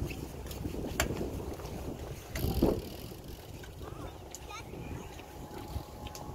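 Wind rumbling on the microphone, with faint distant voices and a few sharp clicks. There is a louder burst of noise about two and a half seconds in.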